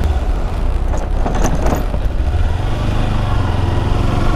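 Kawasaki Versys X300's parallel-twin engine running steadily at road speed, with wind rush over the rider's microphone. An oncoming van passes about a second in.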